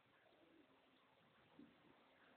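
Near silence: room tone, with one faint soft knock about one and a half seconds in.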